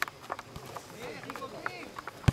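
Football match on a grass pitch: players calling out to each other, with several sharp thuds of the ball being kicked and footfalls.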